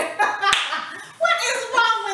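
A single sharp smack of hands about half a second in, followed by a brief hiss, then a woman's voice laughing.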